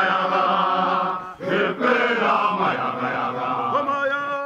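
A group of voices chanting a song together, with long held notes.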